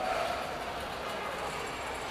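Steady background din of a large exhibition hall, an even wash of noise with no single sound standing out.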